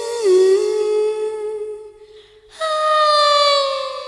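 Music: a solo voice sings long held notes that glide down in pitch, with a short break about halfway through.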